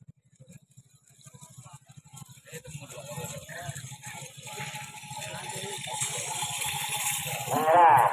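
A pair of kerapan sapi racing bulls dragging a jockey's sled, drawing closer with a fast, even clatter that grows louder. Spectators' shouting builds with it and peaks in a loud shout near the end.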